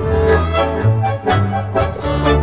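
Tango orchestra playing an instrumental passage: bowed violins over bandoneon, with a double bass moving beneath in short, separate notes.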